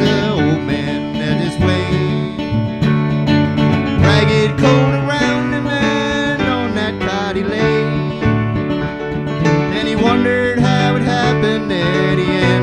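Acoustic guitar and keyboard playing a slow country-folk ballad, with a wavering melody line over the chords.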